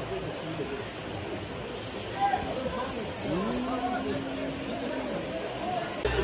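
Heavy rain hissing steadily, with scattered voices of spectators in the stand; about three seconds in, one voice holds a long call for nearly two seconds.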